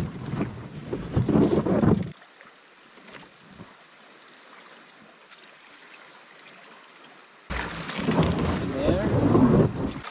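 Wind buffeting the microphone, with water sloshing and splashing as a canoe is tipped over and rinsed out in a river's shallows. The wind drops away after about two seconds and is back loud near the end.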